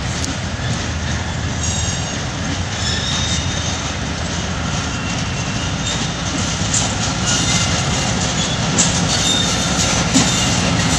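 Diesel locomotive hauling a passenger train as it approaches, its engine rumbling steadily and growing slightly louder. A few wheel clicks on the rails come in the last few seconds.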